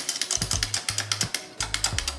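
Plush walking chick toy's geared motor running as it waddles, with rapid, even mechanical clicking.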